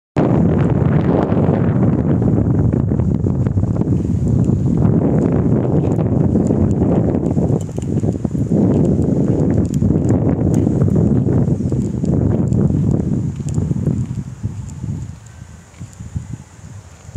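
Strong wind buffeting a phone's microphone: a loud, low rumble that goes on without a break and eases off near the end.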